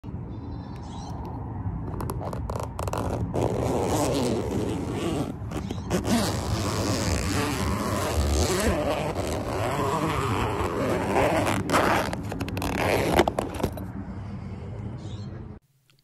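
Zipper running and fabric scraping as the zippered vinyl travel cover of a 23Zero Peregrin 180 awning is opened and handled, with many sharp clicks and knocks along the way. It goes quieter near the end and cuts off suddenly.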